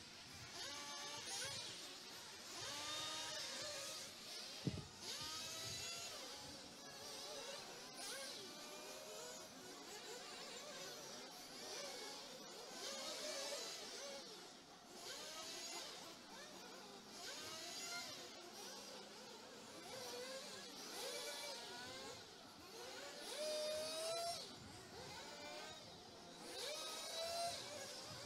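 Several 1:8 scale off-road RC buggies racing, their high-pitched motors buzzing and repeatedly rising and falling in pitch as they accelerate and brake around the track. One brief thump about five seconds in.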